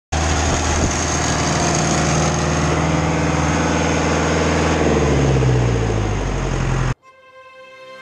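Schwing WP750-15 concrete pump trailer running steadily, its engine and pump working hard. Its pitch sags a little near the end before the sound cuts off abruptly about seven seconds in, and faint intro music begins.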